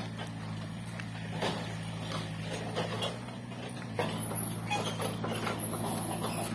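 Mini excavator engine running steadily with a low hum, with scattered knocks and rustles over it. A thin, high-pitched whine joins about four seconds in and carries on.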